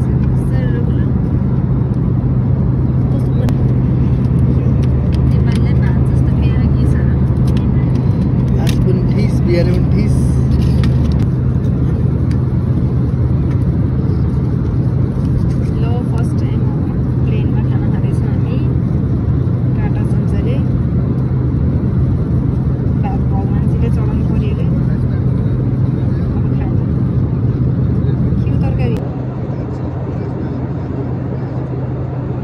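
Steady low drone of an airliner's cabin in flight, with crackling of an aluminium foil meal-tray lid being peeled back during the first ten seconds or so. The drone drops slightly in level near the end.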